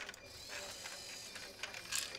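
A small Lego robot motor whirring through its plastic gears, with a few clicks.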